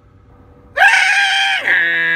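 A man imitating the Emergency Broadcast System alert tone with his voice. A loud, steady, high-pitched beep starts about three-quarters of a second in, then changes to a lower, buzzier tone about a second later.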